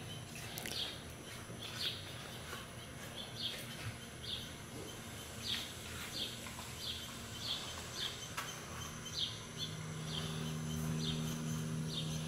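A bird repeating a short, high chirp about once a second. A low steady hum comes in about ten seconds in.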